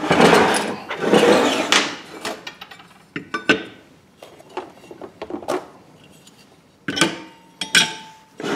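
Steel harmonic balancers and stamped-steel crankshaft pulleys being handled and set down on a workbench: a scraping slide in the first couple of seconds, then scattered clanks and knocks, with a sharp clank near the end after which a metal part rings briefly.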